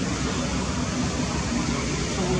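Steady, even background noise with no clear single event.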